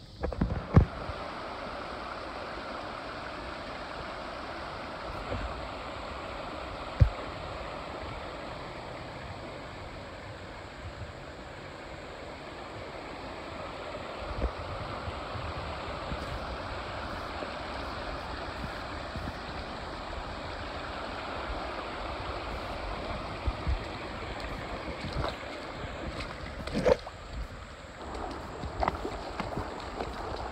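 Shallow creek water running over rocks, a steady rushing, with a few low thumps on the microphone.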